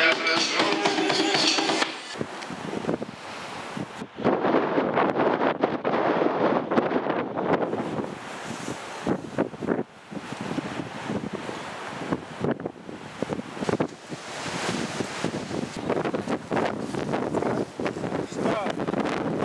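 Strong wind blowing across the microphone in irregular gusts, a rushing, buffeting noise that swells and drops. It takes over when music cuts off about two seconds in.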